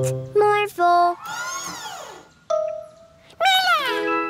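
Cartoon music and sound effects: a few short held notes, then a sweeping rise-and-fall in pitch, a steady note, and a falling glide near the end.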